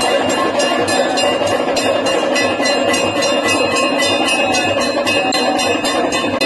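Temple aarti bells and percussion clanging in a fast, steady rhythm, with a dense ringing shimmer over a continuous din.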